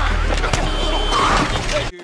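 Street noise of traffic with raised voices over a steady low hum, cutting off abruptly near the end.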